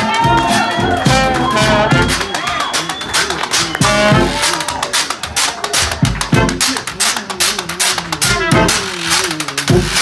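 A traditional New Orleans jazz band playing live: clarinet and trumpet lines over tuba and guitar, with the steady scraping ticks of a washboard keeping time. The horn melody is most prominent in the first few seconds, after which the rhythm section and washboard come forward.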